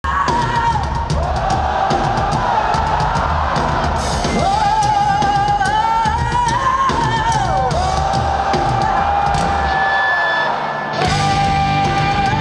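Hard rock band playing live and loud through a festival PA: drums, distorted electric guitars and a female lead voice singing long held notes. Shortly before the end the bass and drums drop out for about a second, then the full band comes back in.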